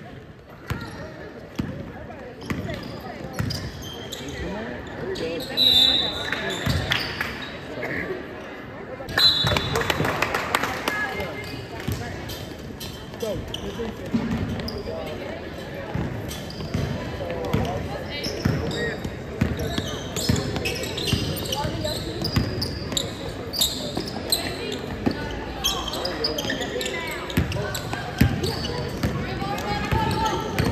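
Basketball bouncing on a hardwood gym floor during a game, the bounces echoing in a large hall over background voices. There are brief high squeaks about 6 and 9 seconds in.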